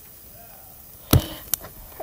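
A sharp, hard knock about a second in, followed by a lighter click half a second later, over a quiet background.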